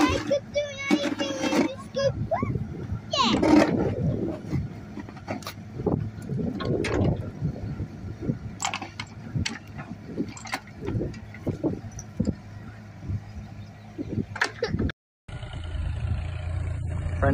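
Yanmar mini excavator's diesel engine running steadily, with scattered short knocks and clanks from the machine as it works. A voice calls out in the first few seconds.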